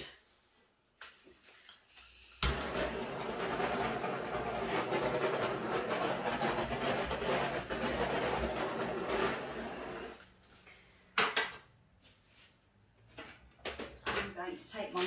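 Hair dryer switched on with a click, blowing steadily with a motor hum for about eight seconds, then switched off and dying away; a single sharp click follows about a second later.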